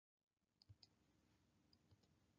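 Near silence with two pairs of faint clicks, one under a second in and one near the end, typical of a computer mouse button being pressed and released to advance a slide animation.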